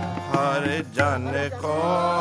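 Sikh kirtan: a man singing a gurbani hymn to harmonium, with tabla accompaniment. The music dips briefly about halfway through before the voice comes back in.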